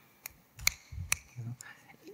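A presenter's breathing and small mouth clicks close to a lectern microphone, three sharp clicks spread through the pause and a brief low hum near the end, just before speech resumes.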